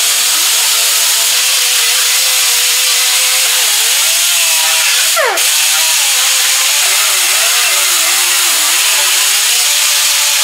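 Two-inch pneumatic grinder running steadily with a loud hiss, its motor pitch wavering as the abrasive disc is pressed against the sheet-metal fender corner, grinding out the Bondo body filler. Its sound drops briefly, with a quick sweep in pitch, about five seconds in.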